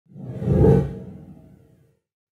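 Whoosh sound effect of a logo intro, swelling to a peak under a second in and then fading away.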